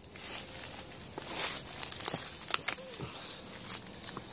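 Footsteps and brushing through leafy undergrowth on rocky woodland ground: irregular rustles and crunches with a few sharp clicks.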